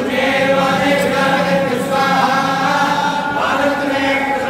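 A group of men chanting Vedic mantras together in unison, in a steady, sustained recitation with a new phrase beginning near the end.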